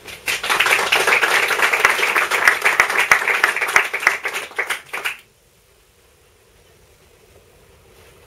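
Small audience applauding for about five seconds after a recited poem, then cutting off abruptly, leaving quiet room tone.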